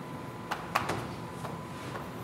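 Chalk tapping and scraping on a blackboard while writing: a few short, sharp strokes, the clearest about half a second and three quarters of a second in.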